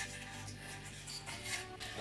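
Faint background music with steady low notes, under the soft rubbing of a hand on a dry, scrubbed wooden log.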